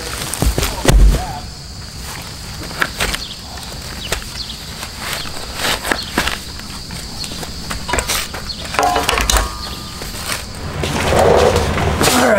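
A heavy thud about a second in as a slab pulled up from beside a house foundation is dropped. Then a spade scrapes and knocks in the soil, in short irregular strokes, as it digs along the wall.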